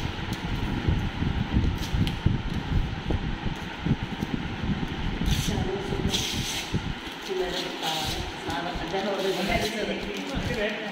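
People talking indistinctly in a room, with a heavy low rumble on the phone's microphone for most of the first seven seconds as it is moved about; from about seven seconds in, the voices come through more clearly.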